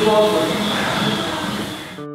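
A man speaking briefly, mostly over a steady background hiss.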